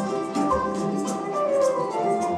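Choro ensemble playing live: a plucked bandolim melody over cavaquinho, acoustic guitar and pandeiro, with soft drum thumps underneath.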